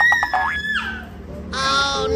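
A young girl's high-pitched squeal, held on one pitch with a quick pulsing, lasting about a second. About a second and a half in, a children's intro jingle starts.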